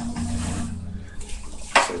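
Handling noise as an acoustic guitar is picked up and swung into playing position: soft rustling with a steady low hum, then one short sharp bump near the end.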